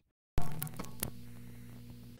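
Relays of a No. 1 Crossbar originating sender operating, heard over the telephone line: a sudden kerchunk with a few sharp clicks, then a metallic ringing hum that fades over about a second and a half. The relays are storing the data sent back by the marker and advancing the sender to its next stage; the metallic ring is microphonics, the relays vibrating one another and putting noise into the talk path.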